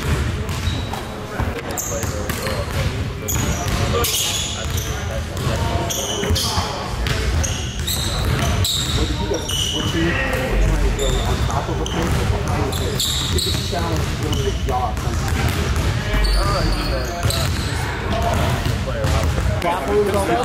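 Basketballs bouncing over and over on a hardwood gym floor, with short sneaker squeaks and indistinct voices, all echoing in a large gym.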